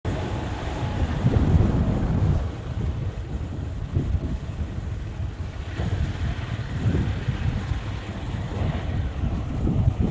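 Wind buffeting the microphone of a camera riding along on a moving motorcycle: a low, gusty rumble that rises and falls.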